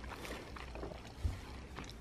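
Faint chewing of food in a quiet room, with a few soft mouth ticks and one brief low thump a little past the middle.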